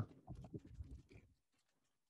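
Near silence on a video call: a few faint, low, irregular sounds for about the first second as a voice trails off, then dead silence.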